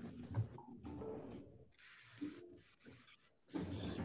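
Faint, muffled voices and small microphone noises coming through a video-call audio feed, with a short burst of hiss about two seconds in and another near the end.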